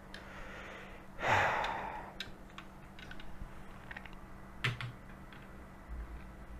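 A man exhales audibly about a second in, then a few faint light clicks and taps as a small 1:43 scale model car is handled and set down on the desk near the end.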